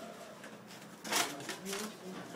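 Background murmur of voices in a small room, with one brief sharp noise, like handling or rustling, about a second in.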